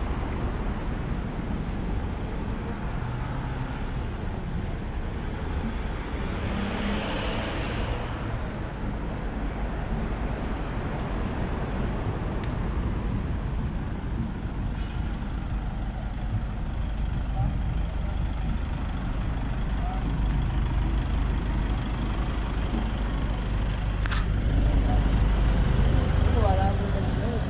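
Steady low rumble of outdoor road traffic, growing slightly louder in the last few seconds.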